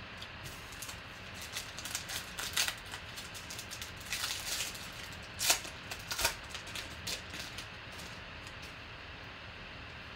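A foil trading-card pack wrapper being crinkled and torn open by hand, as a run of irregular crackles. The densest stretch comes in the middle, followed by two sharp crackles. A steady low hiss lies underneath.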